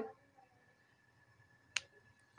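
Quiet room tone broken by one short, sharp click near the end.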